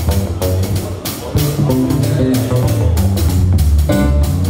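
A small live jazz band playing with electric guitar, keyboard and drum kit, the drums keeping a steady beat under the chords and a strong bass line.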